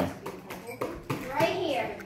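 Children's voices talking quietly in a room, with a few light knocks.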